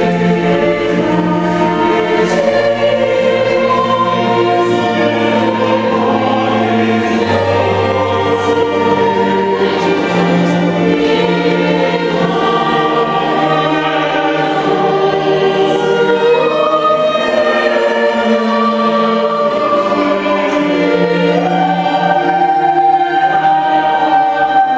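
A small vocal group singing with a string ensemble of violins and a cello, in long held notes with several parts moving together.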